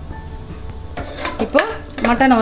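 Wooden spatula stirring and scraping pieces of mutton in an aluminium pressure cooker. It is quiet at first and picks up in the second half.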